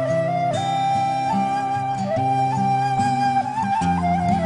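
Background music: a slow flute melody of long held notes with small steps and slides, over a steady low sustained accompaniment.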